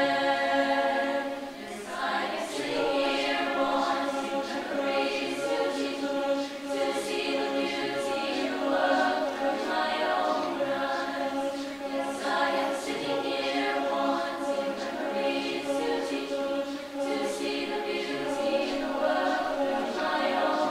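Mixed-voice chamber choir singing a cappella in several parts, holding sustained chords with a short break between phrases about two seconds in.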